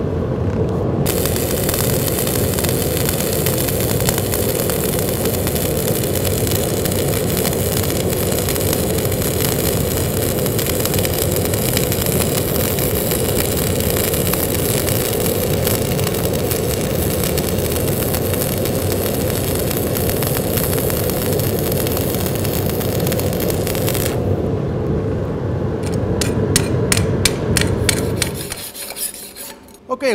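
Stick (SMAW) welding arc from an E6013 electrode at about 120 amps, crackling steadily as a bead is run down a butt joint. It strikes about a second in and stops a few seconds before the end. A short run of rapid sharp ticks follows, and a steady low rush underneath stops shortly before the end.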